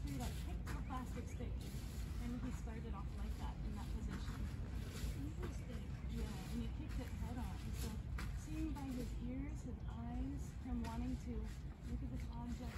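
Plastic tarp crinkling and rustling in irregular bursts as it is handled and lifted against a horse, with a quiet voice speaking underneath.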